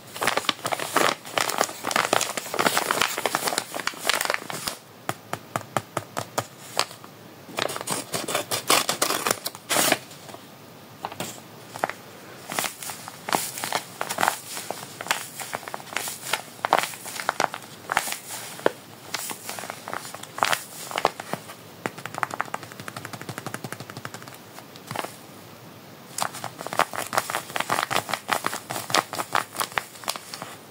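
Paper crinkling and crackling as a handmade paper blind bag is opened and the puffy paper squishy inside is squeezed and handled: dense runs of sharp crackles with short pauses between them.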